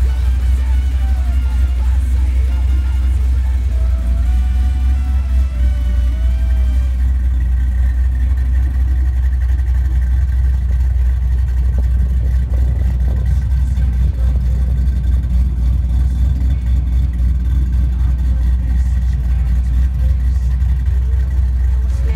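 2006 Ford Mustang GT's 4.6-litre V8 idling with a low, steady exhaust note. Background music plays over it, plainest in the first several seconds.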